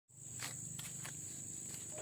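Footsteps of slide sandals on a concrete path, a few separate soft scuffs as someone walks up, over a steady high-pitched insect drone.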